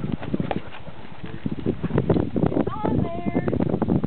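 A dog right at the microphone, breathing and snuffling amid a quick run of clicks and scuffs, with a short pitched vocal sound about three seconds in.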